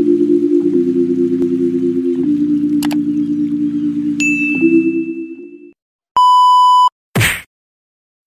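Intro jingle of sustained synth chords that fades out after about five and a half seconds, with a click near three seconds and a bell-like notification ding just after four seconds. Then a single steady electronic beep of under a second, followed by a short whoosh.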